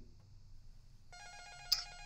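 A telephone ringing faintly: a steady electronic ring that starts about a second in, with a short click partway through.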